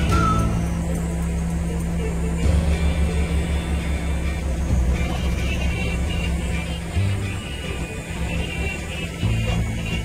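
Background music with a low bass line that moves in steps and short held higher notes over it.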